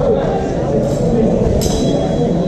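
Indistinct talking of several voices, with one short sharp clink about one and a half seconds in.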